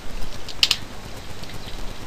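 Computer keyboard keystrokes. The loudest is a quick pair of clicks about half a second in, as a new line is added in the code editor.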